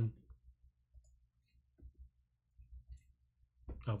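A few faint, scattered computer keyboard keystrokes, with a short spoken "Oh" near the end.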